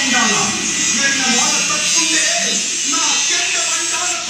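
Voices over a steady buzz.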